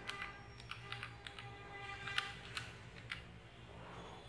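Buttons of a handheld electronic calculator being pressed one after another: about a dozen faint, irregular plastic key clicks as a division and multiplication is keyed in.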